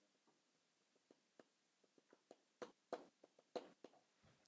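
Near silence in a small room with a scatter of faint clicks and small knocks. They start about a second in and come more often and a little louder in the second half.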